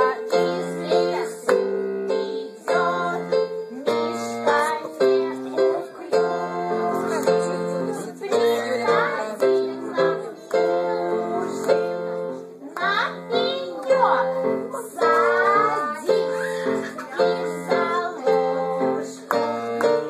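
A children's song: a plucked-string accompaniment playing steady chords, with singing voices gliding above it.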